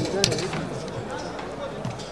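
Mostly men's voices talking, with one sharp click shortly after the start.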